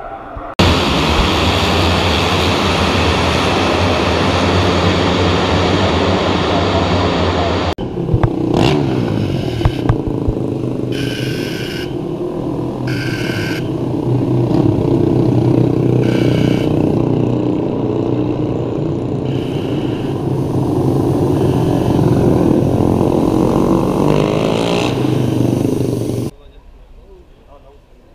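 Honda NSF250R race motorcycle engines running loud and steady on the starting grid. After a sudden change just under eight seconds in, motorcycles ride along the pit lane with their engines revving up and down several times.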